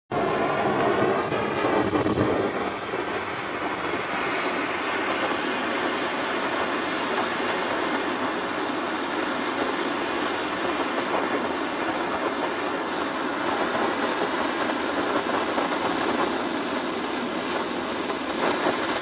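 Steady, continuous mechanical noise, a little louder in the first couple of seconds, like machinery running.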